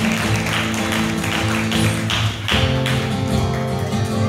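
Live band music led by a fast-strummed acoustic guitar with an electric guitar, the chord changing about two and a half seconds in and then ringing on more steadily.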